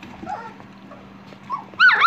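Young standard poodle puppies, about two and a half weeks old, squeaking and whining. There are a few faint squeaks early on, then a loud, high-pitched squeal near the end.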